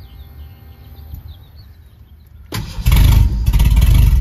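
Faint steady hum of the 1987 Ford Thunderbird Turbo Coupe's electric fuel pump running with the key on. About two and a half seconds in, the 2.3-litre turbo four-cylinder cranks loudly for about a second and a half without staying running, as the car will not start, which the owner puts down to it not fueling.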